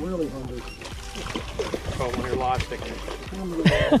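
Splashing water as a hooked striped bass thrashes at the surface beside the boat, under indistinct voices of people on board.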